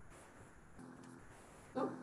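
A single short, sharp pitched call near the end, loud against quiet room tone.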